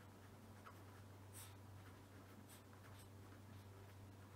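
Faint scratching of a pen writing on paper, a few short irregular strokes, over a low steady hum.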